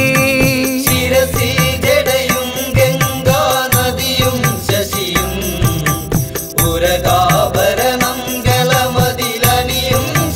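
Music from a Malayalam Hindu devotional song to Ganesha, with a steady, regular percussion beat under sustained melody.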